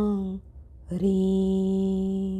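A woman chanting a Jain mantra in slow, long held syllables: one drawn-out syllable ends about half a second in, and after a brief pause the next begins and is held on a steady pitch.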